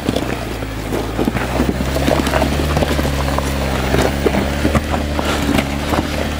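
Jeep Wrangler Rubicon's engine running under load as it crawls up a slope of loose rock. Its pitch steps up and down a little. Tyres crunch and crackle over the stones.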